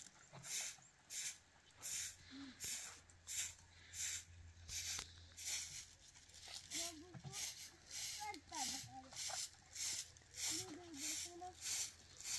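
A broom sweeping dry dirt ground in steady rhythmic strokes, about two to three swishes a second. Children's voices come in briefly partway through.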